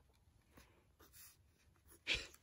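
Faint scratching of a pencil drawing on paper, in a few short strokes.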